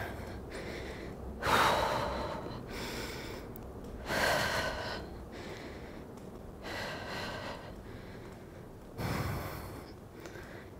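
A woman breathing hard, with a heavy breath out every one to two seconds, from the effort of pedalling at high intensity in a hard-to-breathe interval.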